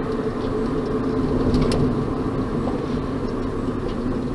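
Steady drone of a van's engine and road noise heard from inside the cabin while driving, with a constant low hum.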